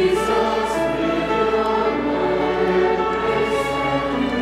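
Two violins and a piano playing a slow, sustained piece of sacred music, with several held notes sounding at once.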